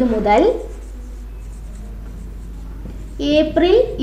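Marker pen writing on a whiteboard: a faint scratching in the pause between a woman's speech at the start and near the end.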